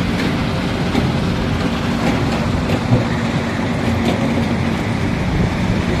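Steady rumble of quarry machinery, a stone-crushing plant and wheel loader at work, with a constant low hum and a few faint knocks.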